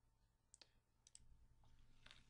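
Near silence broken by a few faint computer mouse clicks: one about half a second in, then a quick pair just after a second.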